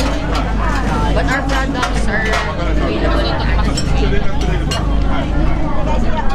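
Several people talking in the background over a steady low rumble.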